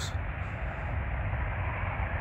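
Steady outdoor background noise: an even low rumble with no distinct tones or events.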